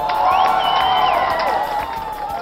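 Crowd cheering and shouting at a rocket liftoff, many voices rising together over one another.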